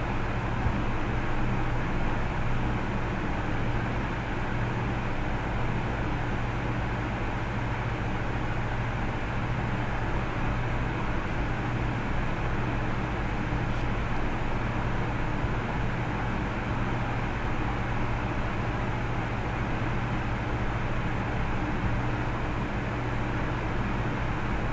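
A steady low hum with an even background hiss, unchanging, with no other events.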